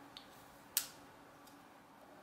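A large folding knife handled in the hands: one sharp metallic click about three-quarters of a second in, with a faint tick just before.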